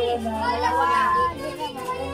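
Children's voices shouting and talking over one another, one voice drawn out for about a second near the start, over a low steady hum.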